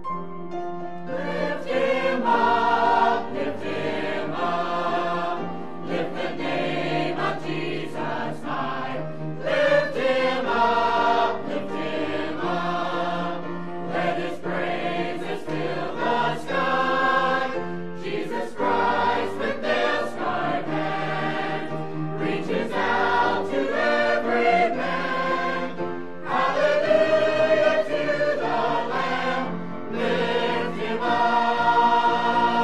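Mixed church choir singing a gospel cantata, in sung phrases of a few seconds each.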